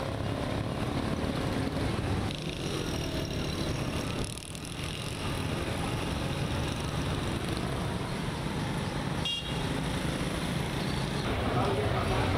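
City street traffic: cars and motorcycles running past in a steady mix of engine noise. The sound dips briefly about four seconds in and again about nine seconds in.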